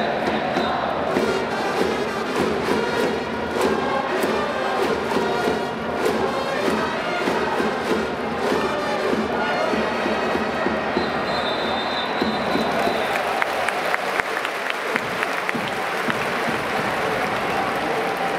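A Japanese baseball cheering section's trumpets and crowd chanting a batter's cheering song in a domed stadium. About ten seconds in the song thins out, giving way to crowd cheering with many claps and sharp knocks.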